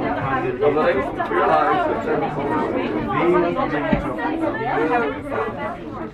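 Several people's voices talking over one another in lively chatter.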